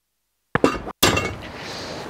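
Removable metal tender track being set down in its deck fitting: a couple of sharp clicks, then a single loud clank about a second in that rings briefly as it fades. The sound cuts out completely at the start and again for a moment just before the clank.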